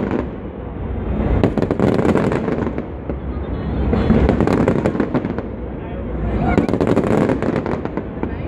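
Fireworks crackling and popping in three waves, each a rapid flurry of sharp bangs, over a steady low rumble.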